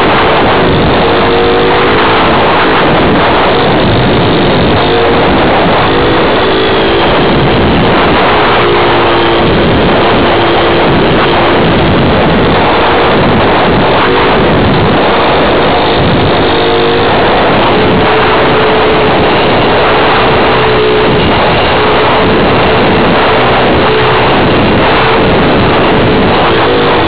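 Motor and propeller of a radio-controlled model plane, recorded by its own onboard camera: a loud, continuous drone mixed with rushing airflow, its tone shifting up and down in pitch several times.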